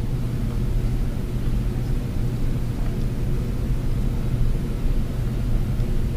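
Steady low rumbling hum with no distinct events in it.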